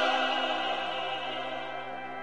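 Church choir singing with organ and strings, holding a long chord with a wavering vibrato line on top that fades away.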